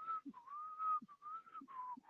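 A person whistling a short tune: a few held notes, the last ones lower in pitch.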